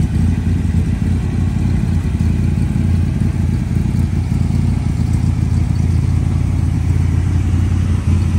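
1966 Corvette's 396 big-block V8 idling with a steady low rumble.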